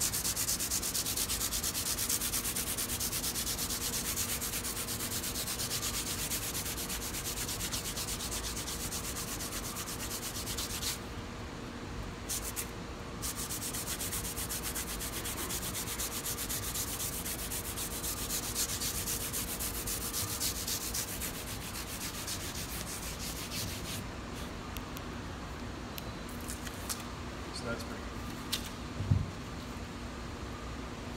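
Abrasive paper rubbed rapidly back and forth over the tops of an electric guitar's frets, rounding the fret crowns back over after fret leveling. The rubbing pauses briefly about eleven seconds in, resumes, then turns fainter and more sporadic over the last several seconds.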